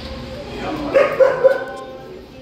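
A dog giving three short, quick barks in a row about a second in.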